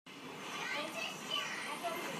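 Faint young child's voice making a few short vocal sounds over a steady background hiss.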